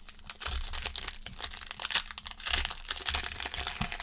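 Foil wrapper of a 2020 Panini Select football card pack crinkling and tearing as it is ripped open by hand, a dense, uneven run of crackles.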